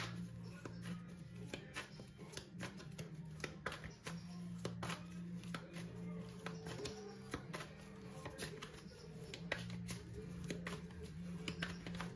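Quiet background music of low held tones, with frequent light clicks and rustles of tarot cards being handled and shuffled.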